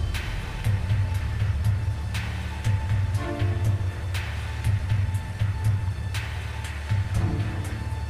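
Background soundtrack music: a low pulsing drum rhythm under a held high tone, with a bright hit about every two seconds.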